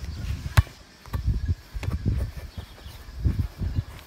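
A sharp slap of a rubber ball being struck by hand, about half a second in. Low, irregular rumbling bursts come and go throughout.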